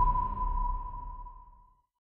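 The last note of a documentary's closing theme music: one high ringing tone held over a low rumble, both fading out to nothing shortly before the end.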